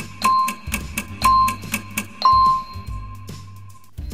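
Quiz countdown-timer sound effect: a bell-like beep about once a second over a quick ticking, the last beep held longer as the timer runs out.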